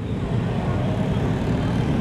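Busy street ambience: a steady low rumble of passing motorbike traffic mixed with crowd noise.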